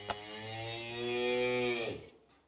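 A cow mooing: one long call of nearly two seconds that sags in pitch as it ends.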